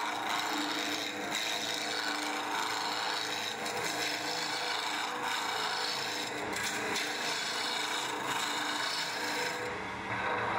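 Wood lathe running while a hand-held turning tool cuts a spinning maple burl blank down to round: a steady scraping cut with steady tones from the lathe underneath.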